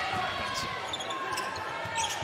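Basketball game sound from the court with no commentary over it: the ball and players' shoes on the hardwood floor, under a low, steady wash of arena noise.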